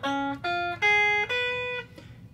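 Ibanez AZES40 electric guitar on its single-coil pickups, slowly picking a seventh-chord arpeggio. Four single notes sound one after another, each ringing briefly before the next.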